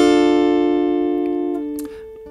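A single chord on an acoustic guitar capoed at the third fret, ringing out after being struck and fading steadily, its notes dying away near the end.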